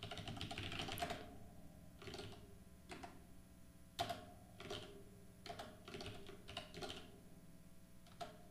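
Computer keyboard typing, faint: a quick run of keystrokes at first, then scattered single key presses.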